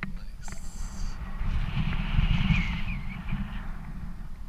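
Wind buffeting an action camera's microphone as a rope jumper hangs swinging in his harness, the rush swelling louder in the middle. A short high-pitched squeal comes about half a second in.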